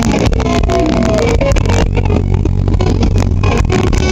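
Live rock band playing loud, with electric guitar, bass and drums. The sound overloads the camcorder microphone, so it comes out harsh and distorted.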